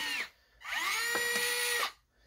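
Combat robot's lifter-and-claw mechanism driven by its ESC-controlled HXT 12 kg metal-gear servo, making an electric motor-and-gear whine as the claw lowers. A short run stops about a quarter second in, then a second run starts about half a second in, rises briefly in pitch, holds steady and cuts off near the end.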